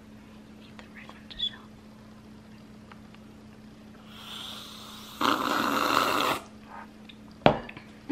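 A breathy rush of noise from a person, loud and about a second long, partway through, led in by a softer hiss; a sharp click near the end.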